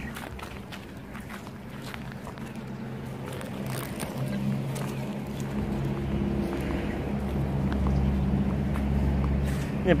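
A motor vehicle's engine running nearby with a steady low hum that grows louder through the second half.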